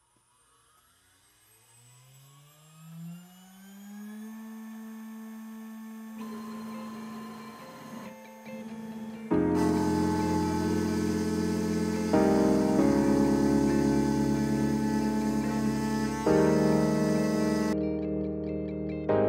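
CNC mill spindle spinning up, its whine rising in pitch over about four seconds and then holding steady. About nine seconds in, much louder background music comes in and covers it.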